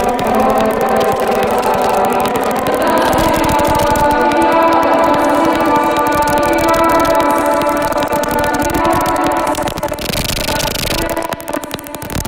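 Experimental electronic glitch music: layered sustained tones over a dense clicking texture, with a burst of hiss about ten seconds in.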